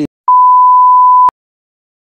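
A single loud, steady, high electronic beep lasting about a second, ending with a click: a censor bleep dropped into the speech.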